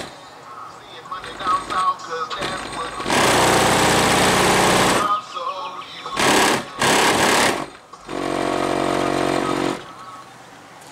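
A hip-hop track played very loud through a car stereo with speakers in the trunk, heard from just outside the car. It comes in hard blasts: one about three seconds in lasting two seconds, two short ones just after six and seven seconds, and a longer one from about eight seconds. Quieter rap vocals fill the gaps between them.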